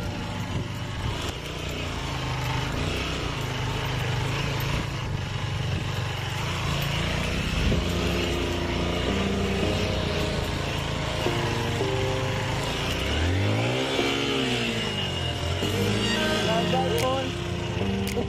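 Dirt bike engine running under load, revving up and back down about three-quarters of the way through, mixed with background music.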